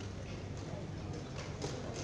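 A few light clicks and taps of chess pieces being set down on the board and a chess clock being pressed during a blitz game, over background chatter of voices.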